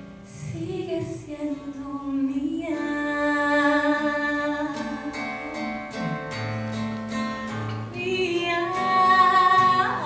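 A woman singing a slow song with long held notes, accompanying herself on a strummed acoustic guitar. Her voice swells to a loud, high held note about nine seconds in.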